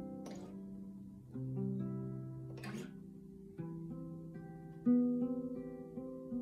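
Acoustic guitar in ADGDCG open tuning picking first-inversion open-voiced triads of the C major scale one note at a time, each note left ringing, with a seventh added over the chord for colour. Two short squeaks of fingers sliding on the wound strings come as the fretting hand shifts to the next chord shape.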